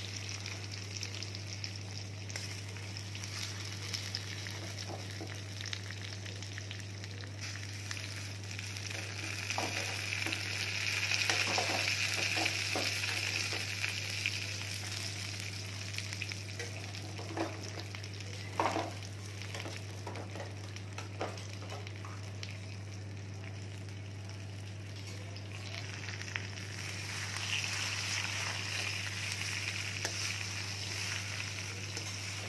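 Taro-leaf parcels filled with gram-flour paste sizzling in hot oil in a kadai, the sizzle swelling louder a third of the way in and again near the end. A metal spoon knocks and scrapes against the pan a few times around the middle as the parcels are turned.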